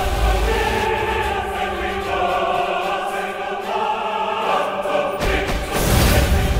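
Dramatic background score with a wordless choir holding long sustained notes. A heavier, fuller swell comes in about five seconds in.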